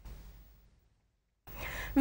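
A brief pause that falls to dead silence, then a soft in-breath from the newsreader in the last half second, just before she starts speaking.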